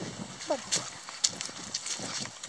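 Footsteps and rustling on a leaf-strewn dirt path during a dog walk, with scattered small clicks. One short falling vocal sound comes about half a second in.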